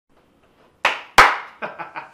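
A man clapping his hands: two loud claps, then three quicker, softer ones.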